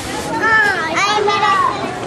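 Young children's high voices chattering and calling out together as they play.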